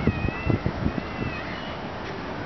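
A high, drawn-out animal call sounds twice, over a few low thumps in the first second.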